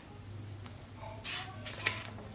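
A paper page of a hardcover picture book being taken by hand and lifted to turn: a soft rustle of paper a little past a second in, then a short sharp click just before the end, over a faint steady hum.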